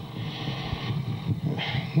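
Microphone handling noise: irregular rumbling and rustling with a hiss as a hand-held microphone is passed to a new speaker.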